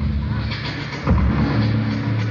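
Live rock band playing, heard through a muffled, bass-heavy audience recording: low sustained bass notes under drums, growing louder with a drum hit about a second in.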